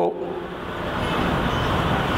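A man's voice ends on a short held sound, then a steady rushing background noise fills the pause and grows slowly louder.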